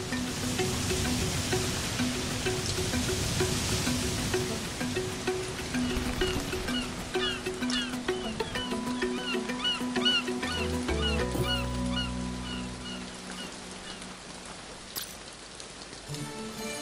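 Background music with a steady, repeating pulse of notes. Under it, a rushing noise of breaking surf fills the first several seconds. Then a run of short high chirps comes in through the middle.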